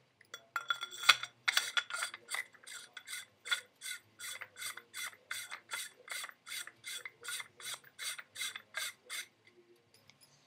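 A paintball barrel being screwed by hand into a CCM T2 pump marker: a long run of short rasping strokes, about three a second, as the threads turn, stopping about a second before the end.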